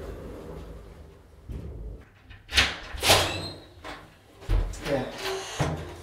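Lift doors sliding shut with a low rumble, followed by door noises in a hallway: two sharp swishes about half a second apart and then a dull thump.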